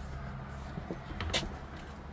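A steady low hum, with one sharp click a little past the middle.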